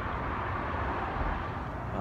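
Steady background hum of distant traffic.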